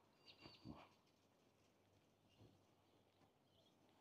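Near silence: faint outdoor background, with a few faint high chirps in the first second.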